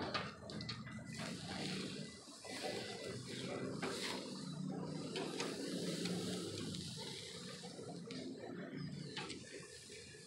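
Pork chops sizzling on a barbecue grill, a steady hiss, while metal tongs turn them with a few light clicks.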